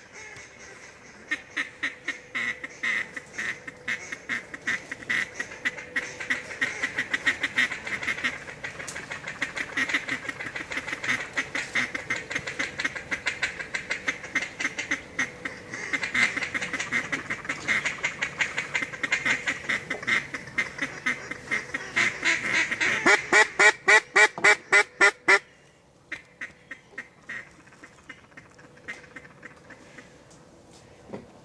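Rapid, continuous duck quacking, with a loud fast run of quacks near the end, about six a second, that cuts off suddenly.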